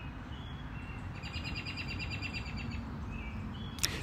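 Small songbird chirping: a few short high chirps, and a rapid trill lasting about a second that begins about a second in, over a faint low background rumble.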